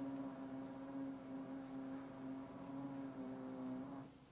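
A steady low hum with several pitched overtones, like a running machine or appliance, that cuts off suddenly at the end.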